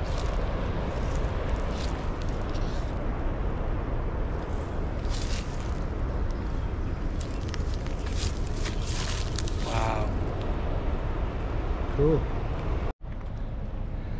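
Steady rushing of water released through Sutton Dam's outlet into the Elk River, with a deep rumble underneath.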